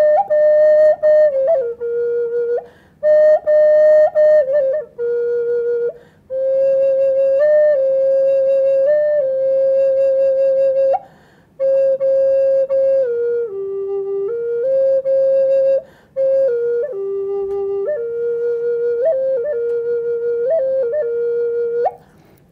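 Purpleheart wood Native American-style flute playing an old Paiute song: a slow solo melody of long held notes with quick ornamental flicks between them, in phrases broken by short pauses for breath.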